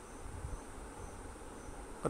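Faint background hiss with steady, high-pitched insect chirping repeating through it.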